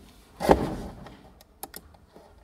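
A dull thump about half a second in, followed by a few sharp clicks from the lectern computer's keyboard or mouse as the slideshow is started.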